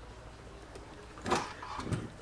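Quiet room tone with two brief scraping, rustling handling sounds about a second and a half in, as the opened plasma cutter's metal case is moved on the bench.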